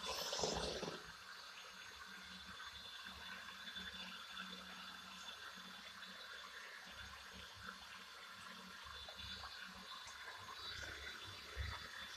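Faint, steady noise of liquid in a bathtub, with a short louder burst in the first second.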